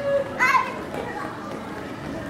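A child's high voice calls out briefly about half a second in, over a background of crowd chatter.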